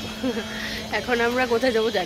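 Speech: a person talking, with a steady low hum underneath.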